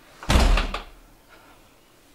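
A front door with glass panels slamming shut: one loud bang about a third of a second in, dying away within half a second.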